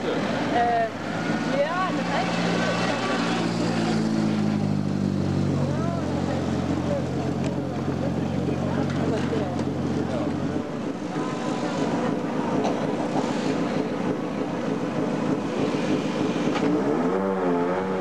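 Skoda Octavia WRC rally car's engine running steadily at low revs as the car rolls slowly, stopping about ten seconds in. Crowd chatter follows.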